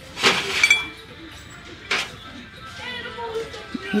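Ceramic mug clinking on a shelf as it is handled and picked up: one sharp ringing clink just after the start, then a lighter tap about two seconds in.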